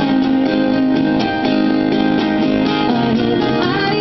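Acoustic guitars strummed live in steady chords, with no singing.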